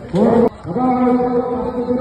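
A voice gives a short rising cry that cuts off abruptly about half a second in. It is followed by one long held note at a steady pitch that carries on to the end.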